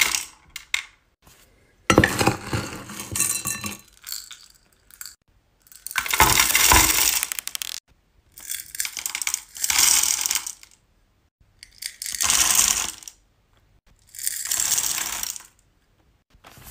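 Hard wax beads poured into a wax warmer's metal pot, rattling and clinking. It comes in repeated pours of a second or two each, with short pauses between.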